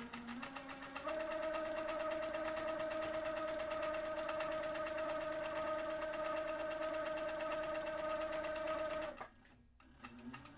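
Handi Quilter Capri sewing machine stitching free-motion quilting: a steady hum with a fast, even needle clatter. It picks up to full speed about a second in, holds steady, then stops abruptly near the end.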